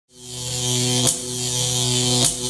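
Channel-logo intro sound effect: a steady buzzing drone with a hiss over it, fading in at the start and briefly broken by a click about a second in.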